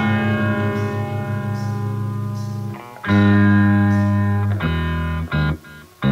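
Distorted electric guitar in a slow doom metal passage. One chord rings for nearly three seconds, a new chord comes in about three seconds in, and short chord stabs with brief breaks follow near the end.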